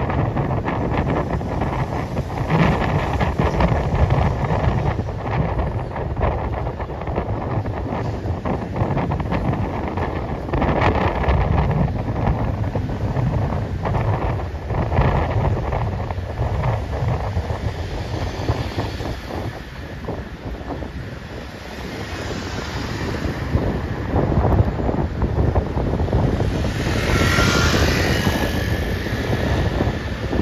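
Busy city street traffic passing, with wind buffeting the microphone. Near the end there is a brief high squeal over the traffic.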